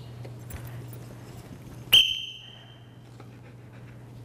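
A single short, high-pitched blast on a dog-training whistle about two seconds in, starting sharply and fading quickly: the one-blast signal for sit. A steady low hum runs underneath.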